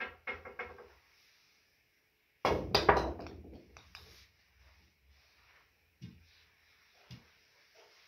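Pool break shot: a regular cue ball struck by the cue slams into a rack of golf balls about two and a half seconds in, giving a sudden burst of sharp clacks as the small balls scatter. Single knocks follow every second or so as balls hit the cushions.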